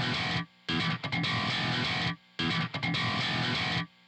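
Recorded heavy electric guitar riff played with the thumb-slap (thumping) technique, in a short section that cuts off and repeats about every second and a half to two seconds, with brief silences between.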